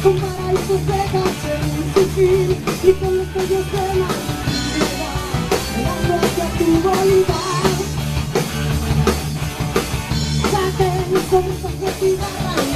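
Live rock band playing: drum kit keeping a steady beat under electric guitars and bass, with a female voice singing.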